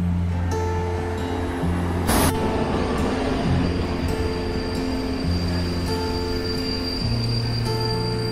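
Background music with slow held chords, over the running noise of a locomotive-hauled passenger train rolling past a station platform. There is a short sharp burst of noise about two seconds in, and a thin steady high-pitched tone from about halfway.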